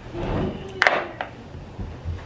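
Makeup items being handled on a bathroom counter: a brief rustle, then a sharp click or knock a little under a second in, a lighter one just after, and a soft thump near the end.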